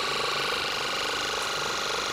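Electric ear-irrigation pump running steadily, a rapidly pulsing buzz as it sprays water through the nozzle into the ear canal to flush out soft impacted earwax.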